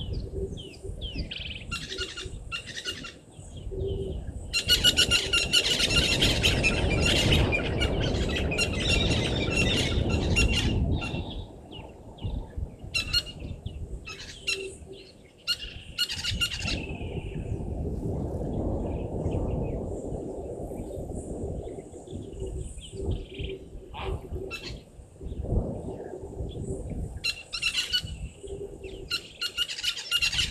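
Wild birds chirping and calling over and over in the bush, with a dense run of rapid chirps from about five to eleven seconds in, over a low rumbling noise.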